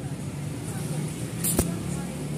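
A brief crackle of a stick-welding electrode touched to the steel bracket about one and a half seconds in, the start of the arc for a tack weld, over a steady low hum.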